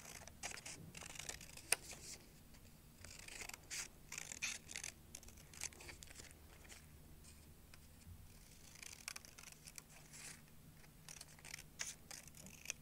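Small scissors cutting through sheet of craft paper in short, irregular snips, quiet and close.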